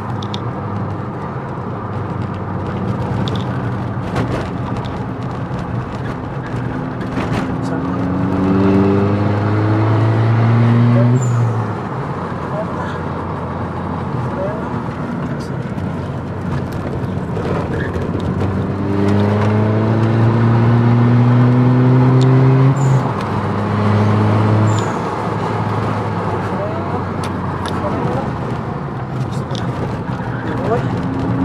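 SEAT Leon FR's engine heard from inside the cabin, driven hard on a race track. The pitch climbs twice in long pulls under full throttle, each ending in a sudden drop at the upshift, with steadier engine and road noise in between.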